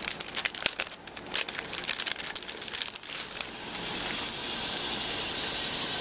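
Clear cellophane sticker bag crinkling and crackling as it is handled and opened, for about three and a half seconds. Then a steady hiss comes in and slowly grows louder.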